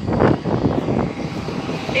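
A steady low rumble of outdoor noise, with brief rustling near the start as the phone's microphone is swung about.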